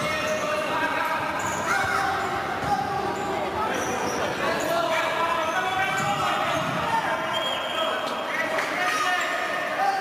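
Indoor futsal play: the ball is kicked and bounces on the hard court floor while players' shouts and calls echo around the sports hall.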